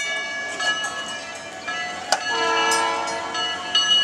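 Los Angeles Railway PCC streetcar of 1937 rolling past at slow speed, its running gear giving several steady high tones, with a sharp click about two seconds in.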